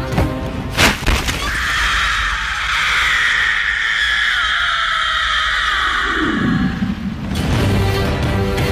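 A sharp hit about a second in, then a long, high, shrill wailing cry that lasts about six seconds and cuts off suddenly, over the film's music.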